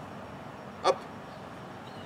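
Steady outdoor background noise, with one short spoken word, "up", about a second in.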